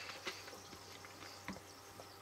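Faint swishing and fizzing of carbonated cola as a cookie held in metal tongs is moved around in a glass, with a few small clicks, the clearest about one and a half seconds in.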